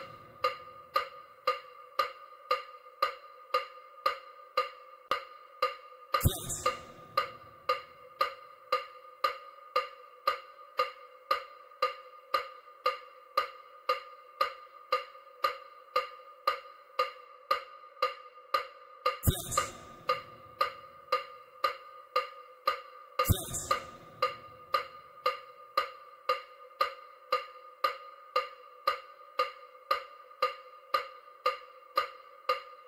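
Electronic bilateral-stimulation tones for EMDR: short pitched ticks repeating evenly, about two a second. Louder bursts of hiss-like noise break in three times, at about 6, 19 and 23 seconds.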